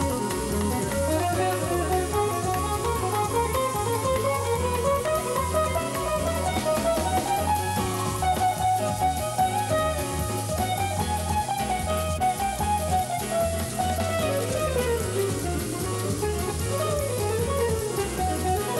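Live jazz-fusion band playing: an electric guitar runs fast, flowing melodic lines that climb and fall over a drum kit with cymbals.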